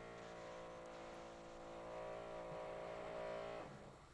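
Faint steady buzzing tone with many even overtones, the glitch of a video call's audio dropping out while the guest is speaking. It swells a little and then cuts off suddenly near the end.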